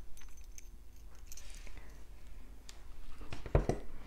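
Faint, scattered small clicks of steel jewellery pliers and tiny metal findings (jump ring, sequin, hoop) being handled, with a soft knock near the end.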